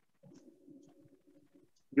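A faint, low-pitched bird call lasting about a second and a half.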